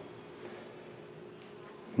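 A faint steady hum under low room noise.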